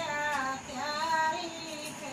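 A woman's voice singing a dehati folk song in two short phrases, the second held longer.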